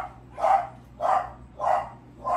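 A dog barking repeatedly, about two barks a second, in an even rhythm.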